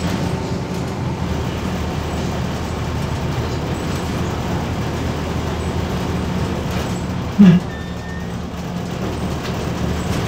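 Mercedes-Benz OM904LA four-cylinder diesel of a MAZ 206 city bus running steadily under way, heard from inside the passenger cabin with road noise. About seven seconds in there is one short, loud low thump, followed by a brief faint high tone.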